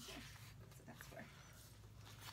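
Near silence: a low steady room hum with a few faint ticks.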